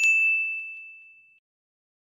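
Notification-bell 'ding' sound effect from a subscribe-button animation: one bright, high chime struck once that rings out and fades over about a second and a half.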